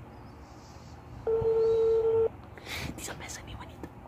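One ring of a telephone ringback tone heard through a smartphone's speaker while a call waits to be answered: a steady beep about a second long that starts about a second in.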